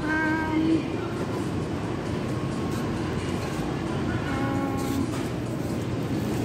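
Steady background hum of a supermarket. Two brief held tones rise above it, one at the very start and one about four and a half seconds in.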